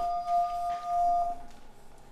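Electronic chime of an apartment intercom's door-entry system, a steady ringing tone signalling the lobby door has been released, fading out about a second and a half in.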